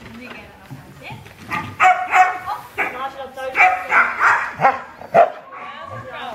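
A dog barking in a string of short, loud, high-pitched barks, starting about a second and a half in and ending just after five seconds.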